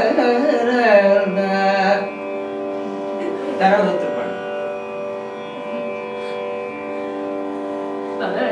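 Carnatic singing of a phrase in raga Malayamarutham for about two seconds over a tanpura drone. The drone then carries on alone, steady and unchanging, with one brief sung phrase just before four seconds in.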